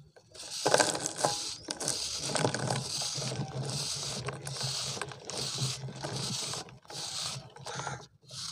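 Kitchen knife blade shaving a dried pure-cement round: a run of rasping, crunchy scrapes starting about half a second in, with dry crumbs and powder pattering down into a wicker basket.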